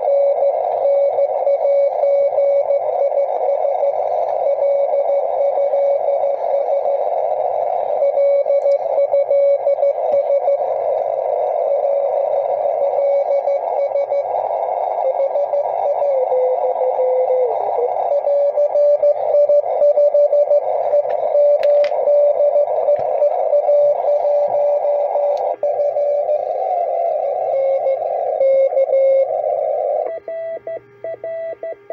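Morse code (CW) from another amateur station received on an Elecraft K2 transceiver: a mid-pitched tone keyed on and off in dots and dashes over a steady hiss of band noise, squeezed through the radio's narrow CW filter. About two-thirds of the way in the tone's pitch dips briefly as the receiver is tuned.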